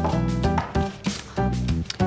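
Background music: sustained notes over a low bass.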